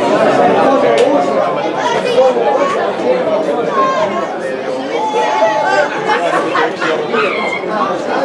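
Several spectators' voices talking over one another at once, a steady overlapping chatter close to the microphone.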